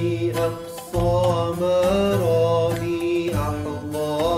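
An Arabic song: one voice holding a long, wavering melismatic line with no clear words over instrumental accompaniment, with a low bass pattern repeating about once a second.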